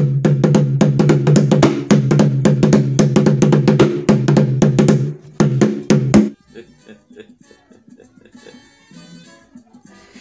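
Drumming: a fast, dense run of drum strokes over a steady low pitched ring, starting suddenly and cut off sharply about six seconds in.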